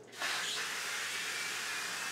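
Aerosol avocado-oil cooking spray hissing in one continuous, steady spray from the can. It starts just after the beginning.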